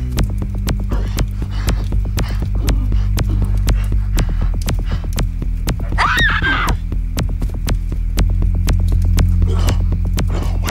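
Dark film-score underscore: a low throbbing bass drone that moves to new notes about four and eight seconds in, under a rapid ticking pulse. About six seconds in, a woman gives a short cry that rises and then falls in pitch.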